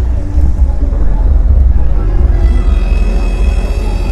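A loud, uneven low rumble, with sustained background-music tones coming in about halfway through.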